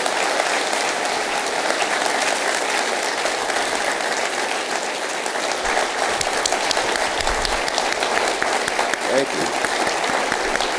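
Audience applauding, a dense steady patter of many hands clapping.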